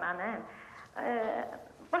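A woman's voice coming in over a telephone line, thin and cut off at the top. It breaks off briefly and resumes about a second in.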